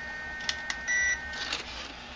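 Electronic beep from a radio-controlled model's electronics as its third-channel lights switch is worked: a steady high tone that stops about one and a half seconds in, with a couple of light clicks.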